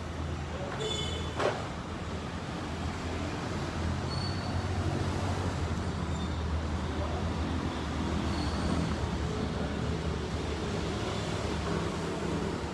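Steady low motor-vehicle rumble, with a single sharp click about a second and a half in.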